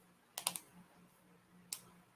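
Computer keyboard keystrokes: a quick cluster of a few clicks about half a second in, then a single click near the end.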